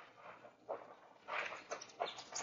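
A few faint scuffing footsteps on a cave floor, a radio-drama sound effect: one scuff a little under a second in, then a short run of them in the second half.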